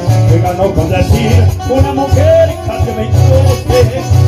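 Live Argentine folk band music: acoustic guitars playing over a strong, steady bass line, with a pitched melody line running above.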